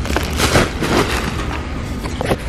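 Plastic wrap of a bulk pack of paper rolls crinkling and rustling as it is handled right against the microphone. The loudest crinkling comes about half a second in.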